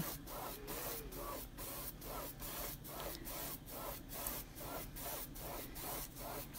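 Paintbrush stroking back and forth across a stretched canvas, a rhythmic scratchy swish of about three strokes a second, blending wet paint.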